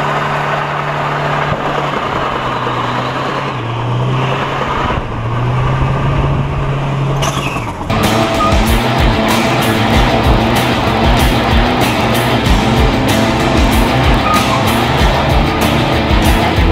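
Turbo-diesel four-cylinder engine of a Mazda WL held at high revs while the truck spins doughnuts, with music mixed in. About halfway through the sound changes and a fast, even beat comes in.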